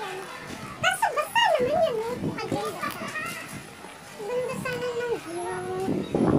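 Children's voices in play: high calls and shouts with chatter, loudest about a second in and again near the end.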